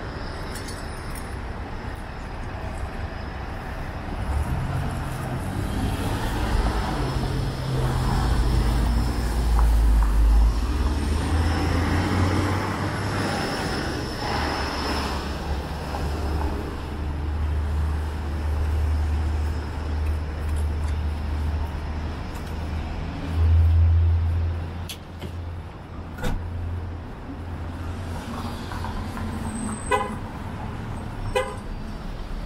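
Downtown street traffic: cars and a heavy cement mixer truck driving past, a deep engine rumble that builds to its loudest about a third of the way in, holds through the middle, swells once more near the end and then eases.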